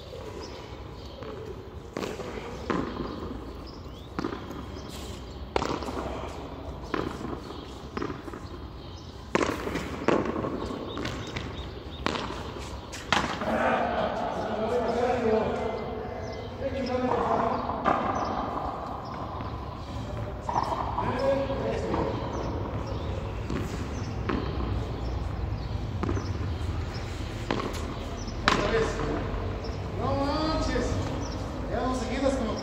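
A handball rally on a frontón: the ball struck by bare hands and smacking off the concrete wall and floor in sharp cracks at irregular intervals, with indistinct voices partway through.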